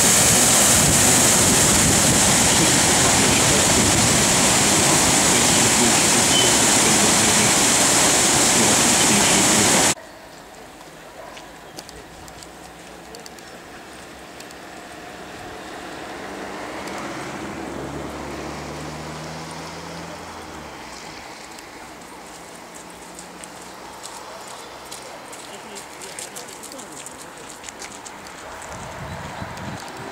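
Water rushing loudly and steadily over a weir, cutting off abruptly about ten seconds in. What follows is much quieter outdoor sound with a faint low hum that swells and fades midway.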